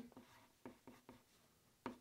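Faint scratching of a pen writing on paper: a few short strokes, with a slightly louder one near the end.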